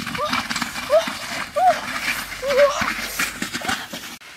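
A chicken clucking: about five short calls that rise and fall in pitch, spaced irregularly, over light rustling and clicks.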